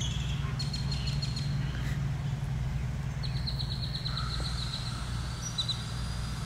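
Birds chirping, with a fast trill of high notes a little past halfway, over a steady low rumble.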